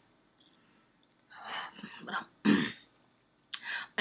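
A woman clearing her throat: a breathy rasp, then a short, sharp clear about two and a half seconds in, followed by a brief breath near the end.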